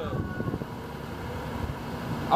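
Steady low rumble of a city bus engine and street traffic, with a brief faint high tone fading in the first half second.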